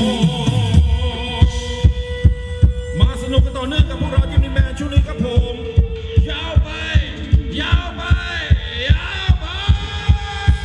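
Thai ramwong dance music from a live band. A low note slides down at the start, then a steady kick-drum beat comes in, a little over two beats a second, under a melody with gliding notes.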